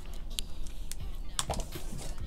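Computer keyboard being typed on: a handful of separate key clicks, the loudest about one and a half seconds in, over background music.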